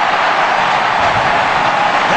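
Large cricket stadium crowd cheering loudly and steadily, with scattered shouts in the roar, at the fall of a wicket.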